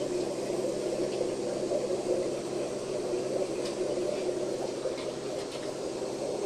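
Steady sound of water running through a guppy tank's circulation pipes.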